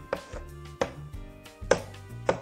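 Chalk tapping and scraping on a blackboard as words are written, with about three sharp taps. Background music with steady notes and a bass line plays underneath.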